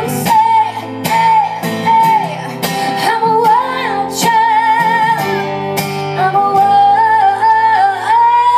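A woman singing live into a microphone, her held notes wavering with vibrato, over acoustic guitar strumming.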